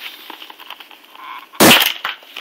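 Plastic shell of a Seagate GoFlex Desk hard-drive enclosure being pried apart by hand: a few small clicks, then one loud, sharp crack near the end as the snap-tabs let go and the case cracks open.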